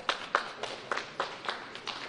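Scattered hand clapping: a few sharp, irregular claps a second.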